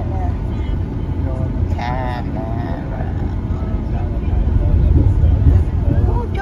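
Steady low rumble of a car driving along a road, heard from inside the moving car, swelling a little about five seconds in.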